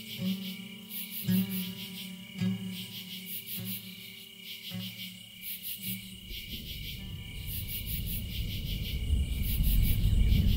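Solo guitar music, a plucked note roughly once a second, fading out about six seconds in. It gives way to a low rumbling room noise that grows louder toward the end, while a high, fast-pulsing buzz runs underneath throughout.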